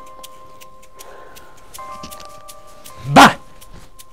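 A single loud, short bark about three seconds in, startling the woman at the rack, over quiet background music with held tones and light ticking.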